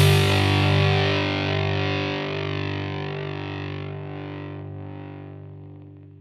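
Closing chord of a distorted electric-guitar rock track, struck once and left to ring, slowly dying away.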